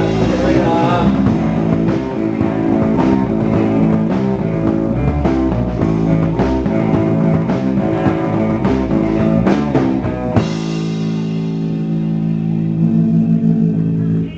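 Live rock band playing electric guitar, bass guitar and drum kit. About ten seconds in, the drums stop and held guitar and bass chords ring on, pulsing near the end, as the song finishes.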